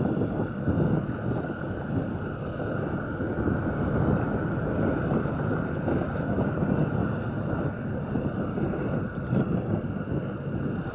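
Engine of a Honda CG 150 Fan motorcycle, an air-cooled single-cylinder four-stroke, running steadily while riding along a dirt road with gravel patches, with wind on the microphone.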